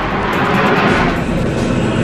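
A dense, rushing jet-engine sound effect with a deep, steady rumble underneath, mixed with background music.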